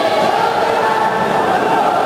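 Spectators chanting and shouting together, many voices at once, at a steady loud level.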